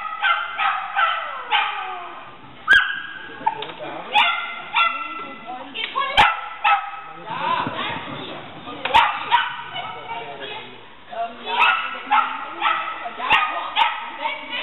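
Shetland sheepdog barking over and over in high-pitched yipping barks, several a second with only short pauses, as it runs an agility course. A few sharp clicks cut through the barking.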